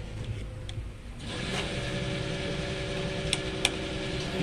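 Fuel dispenser's pump starting about a second in and then running steadily, diesel flowing through the nozzle into a truck's tank, over a low rumble; two short clicks near the end.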